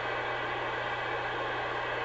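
Steady static hiss from a CB base radio's receiver with no station transmitting, over a low steady hum.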